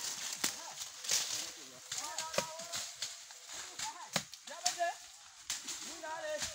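Machete strokes chopping into brush and undergrowth: sharp, irregular strikes roughly every second or so. Voices talk in the background between the strokes.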